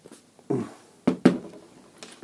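Cordless drill being set down on a tabletop: a short dull thump, then two sharp knocks about a second in as it lands.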